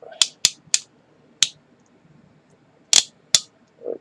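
Plastic joints and parts of a Transformers Combiner Wars Deluxe Groove action figure clicking as it is handled. There are six sharp clicks: three quick ones in the first second, one more a moment later, and two near the end.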